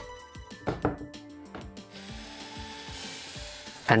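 Soft background music, with a few knocks of CNC-cut plywood parts being fitted together in the first two seconds, then a faint steady noise.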